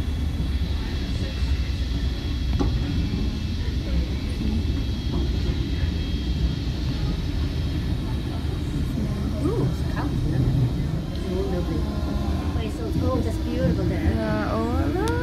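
Steady low rumble of a moving vehicle heard from inside it, with faint voices now and then.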